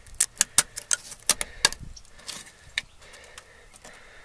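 A quick run of sharp, irregular clicks and crackles, thickest in the first two seconds and then a few sparser ones: fingers picking and flicking at cracked, flaking body filler (Bondo) along the lower edge of a wrecked Corvette's fiberglass body.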